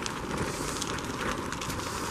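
Footsteps on a snowy sidewalk, heard as faint, irregular crackles over a steady outdoor hiss.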